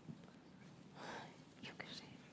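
Very quiet hall room tone with a few soft breathy sounds, like faint whispering, about a second in and again shortly after.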